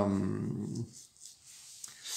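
A man's drawn-out hesitation sound ("euh") trailing off. It is followed by about a second of near silence with a faint click near the end.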